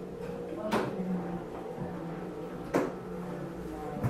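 Two sharp knocks about two seconds apart, over a steady low hum.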